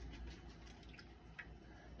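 Near silence: faint room tone with a low hum and a few faint small ticks, the clearest about a second and a half in.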